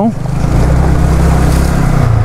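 Yamaha R15 V3's single-cylinder engine running steadily at low speed under a rushing hiss as the motorcycle rides through a shallow stream crossing.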